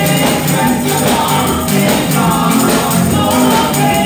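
Live gospel praise song: women singing together into microphones, backed by drums and percussion.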